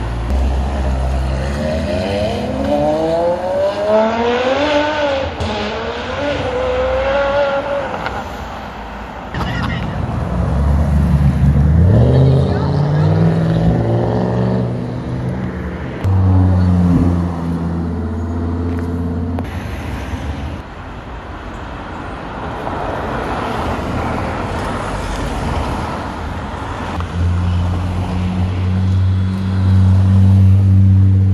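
Sports-car engines accelerating away one after another, their revs rising for several seconds at a time, with stretches of steady low-rev engine running between.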